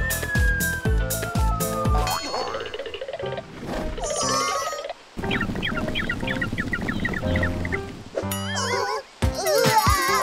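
Cartoon sound effects over children's background music. A whistle falls in pitch for about two seconds, then comes a run of comic boings and quick, wobbly chirping tones.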